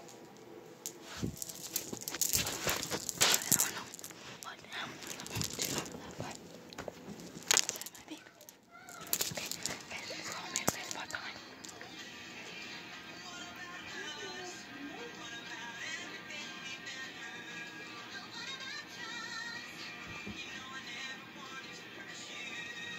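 Rustling and bumping handling noise on a phone microphone for about the first nine seconds. After that, faint background music with singing, plus low voices.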